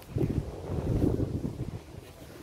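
Wind buffeting the phone's microphone: an uneven, gusting low rumble.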